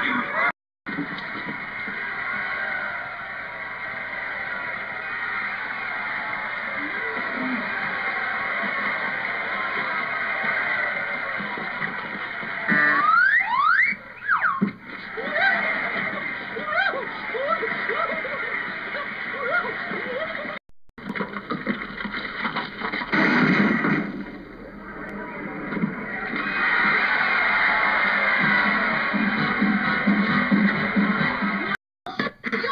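Old film soundtrack: music mixed with voices. A cluster of rising squeals comes about halfway through, followed by short pitched cries. The sound drops out briefly twice.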